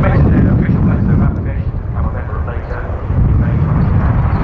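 Jet noise from an F/A-18C Hornet's twin General Electric F404 turbofans as the fighter flies its display overhead: a loud, steady sound with a deep low rumble.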